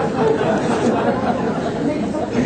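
Many people talking at once: a crowd of voices chattering in a hall.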